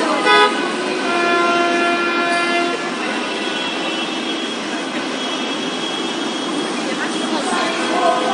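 Vehicle horns honking in jammed traffic: a short loud toot just after the start, then a longer horn blast held for nearly two seconds about a second in, and a fainter horn after it, over steady traffic noise.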